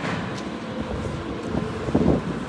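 Low, uneven rumbling noise with soft irregular knocks: wind and handling noise on a hand-held phone microphone while walking.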